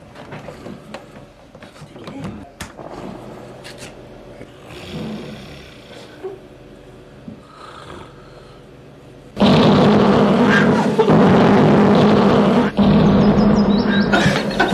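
A few soft rustles and faint breathing in a quiet room, then about nine seconds in a sudden, very loud, harsh roar of sound through a microphone, blasted to jolt a sleeper awake.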